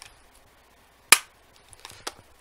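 A single shot from a cheap spring-powered airsoft pistol, a Beretta 92 copy, fired into a chronograph: one sharp snap about a second in. The shot is very weak, reading about 36 feet per second, a sign of a gun with next to no compression.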